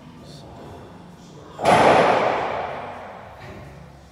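A single sudden loud slam from a plate-loaded leg press machine carrying 160 kg, about one and a half seconds in, its noise dying away over about a second and a half.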